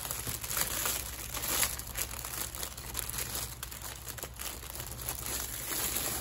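Clear plastic shrink wrap crinkling and tearing as it is pulled off a cardboard box by hand, a dense run of crackles throughout.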